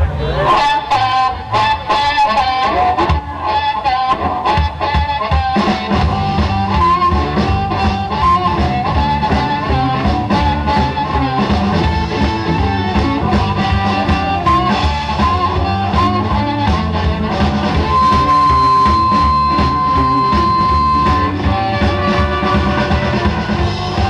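Amplified blues harmonica, cupped against a handheld microphone, plays a bending instrumental lead line over electric guitar. A bass line joins about five seconds in, and near the end the harmonica holds one long steady note.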